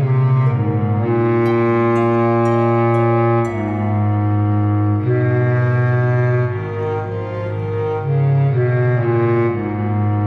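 Film score played on low bowed strings: cello and double bass hold long notes that change every second or so.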